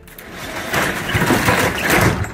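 Roll-up rear cargo door of a U-Haul box truck being pulled down, a loud, noisy rumble that builds from about half a second in.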